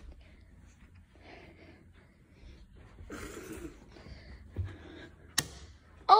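Quiet room with faint rustling and a low thud, then a single sharp click near the end, typical of a wall light switch being flipped off.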